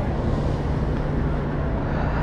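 Road traffic on a city boulevard: a car driving past with a steady low rumble of traffic.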